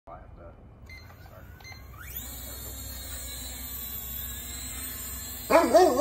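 Small quadcopter drone's propeller motors spinning up about two seconds in, rising quickly to a steady high whine as it lifts off. Near the end a loud wavering vocal cry cuts in over it.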